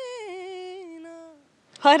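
A young man singing unaccompanied, holding a long note with vibrato that rises, then glides down and fades out about one and a half seconds in. A man's short, loud exclamation follows near the end.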